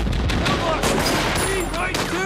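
War-film battle soundtrack: rapid, sustained machine-gun and rifle fire, with men's voices calling over the shooting.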